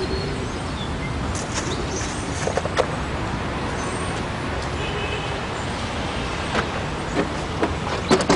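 Steady background noise of distant road traffic, with a few faint knocks.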